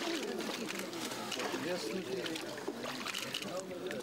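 Untranscribed voices of people talking at an outdoor ice-hole pool, with faint sloshing water as a man stands in the icy water.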